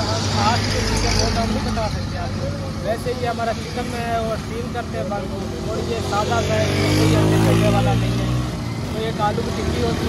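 A man talking over road traffic. A passing motor vehicle's engine rises in pitch and is loudest around seven to eight seconds in.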